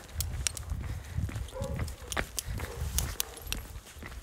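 Footsteps of a person walking while holding a phone, low thuds about twice a second mixed with sharp clicks and rubbing of the microphone against hand and clothing.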